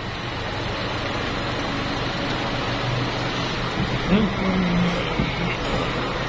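OCA laminating machine's bubble-remover chamber running its pressure cycle to clear bubbles from a laminated phone screen, giving a steady noisy hum.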